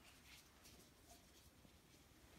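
Near silence, with a few faint, brief rustles of gloved hands handling a plastic feeding syringe as its plunger is taken out.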